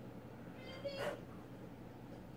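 A domestic cat meowing once, about a second in.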